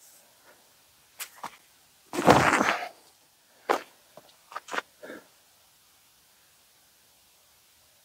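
A forehand disc golf drive. A brief rushing burst about two seconds in marks the throw, with a few sharp ticks and knocks before and after it.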